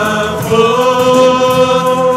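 Live worship song: singing voices hold a long note over electric guitar and bass, moving to a new note about half a second in.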